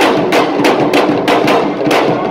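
Lively drumming with sharp, slapping strokes about three to four times a second over a dense wash of sound.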